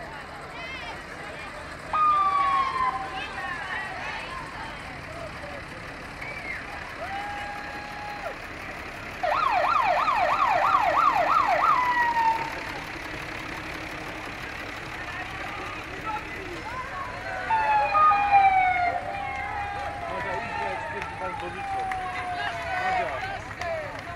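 A siren yelping in fast up-and-down sweeps, about three a second, for roughly three seconds in the middle, the loudest sound here, over the chatter of a street crowd.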